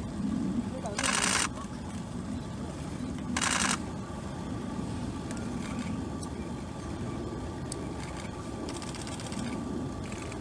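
Camera shutters firing in two short rapid bursts, about two seconds apart, over a steady low background rumble.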